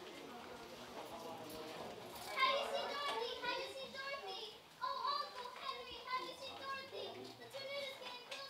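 A group of children's high voices talking and calling out at once over a low murmur, getting louder and busier about two and a half seconds in.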